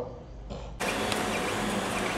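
Creality CR-10 3D printer running, a steady whir of its fans and stepper motors that comes in suddenly about a second in.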